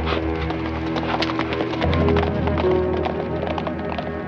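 A horse's hooves clip-clopping on a dirt street as it is ridden away, heard over a background music score of sustained notes.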